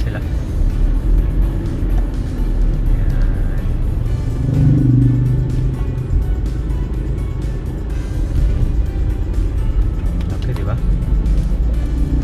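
Steady low rumble of a car's engine and tyres, heard from inside the moving car's cabin, swelling briefly about halfway through.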